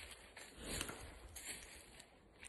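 Faint rustling and a few soft taps, over a low rumble of handling noise from a phone carried while walking.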